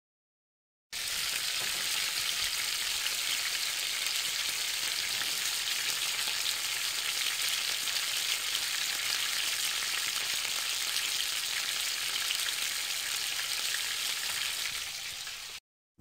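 Sizzling sound effect of fish roasting on a grill: a steady crackling hiss that starts about a second in and cuts off just before the end.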